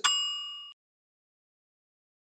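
A single bright chime sound effect, one ding with several ringing tones that fades and cuts off within a second. It is the cue to pause and work out the answer to the question just asked.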